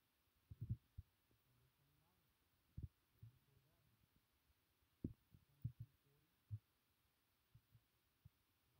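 Near silence, broken by about ten faint, short, low thumps at uneven intervals.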